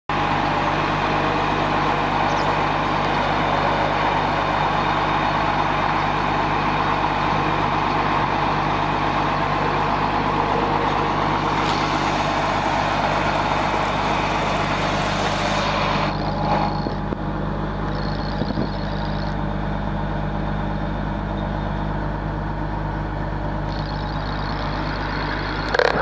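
Diesel engine of a Sterling L7501 asphalt distributor truck running steadily. A loud hiss rides over the engine and drops away about sixteen seconds in.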